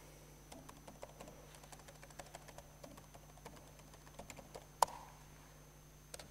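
Laptop keyboard typing: a run of faint, irregular key clicks, with one sharper click about five seconds in, over a steady low hum.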